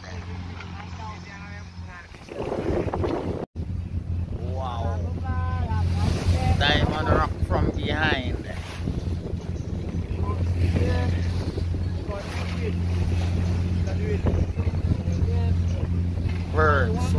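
A boat's engine droning steadily, with wind buffeting the microphone and the rush of water past the hull; indistinct voices come in over it from about four seconds in.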